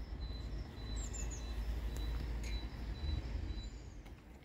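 Small birds chirping, with short high whistles and glides, over a steady low outdoor rumble.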